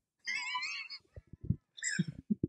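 Men laughing: a high-pitched, wavering laugh for about a second, then short breathy bursts of laughter.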